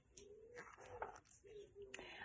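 Faint, low cooing of a pigeon, heard in short repeated phrases in an otherwise near-silent room.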